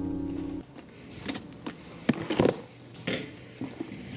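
Acoustic guitar background music cuts off within the first second. After that come only quiet handling noises: a few soft knocks and rustles.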